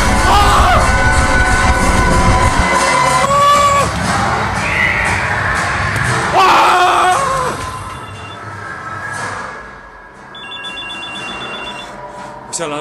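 People screaming in fright over eerie music, with a heavy low rumble in the first few seconds. Near the end a telephone starts ringing.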